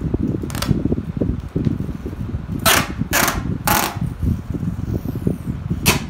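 Packing tape pulled in quick rasping strips off a roll: one short pull about half a second in, three fast pulls in a row around the middle, and one more at the end, over a steady low rumble.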